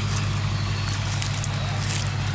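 Iseki tractor's diesel engine idling steadily with an even low hum.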